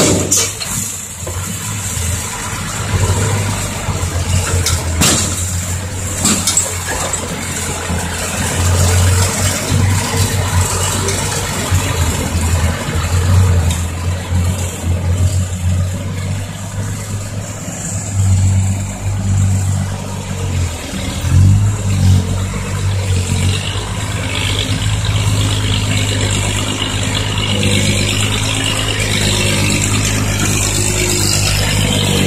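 Six-wheel dump truck diesel engine running, its level rising and falling as the truck pulls through loose dirt. A few sharp knocks come in the first several seconds.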